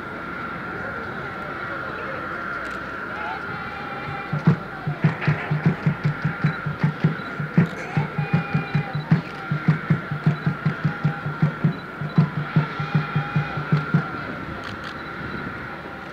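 A steady drum beat, about four beats a second, starting about four seconds in and stopping about two seconds before the end, over voices and a steady high-pitched whine.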